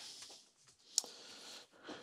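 Faint tool-handling noise on the engine, with one sharp click about a second in.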